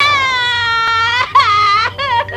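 Cartoon woman's high-pitched wailing cry: one long, slightly falling wail, then a shorter wavering one.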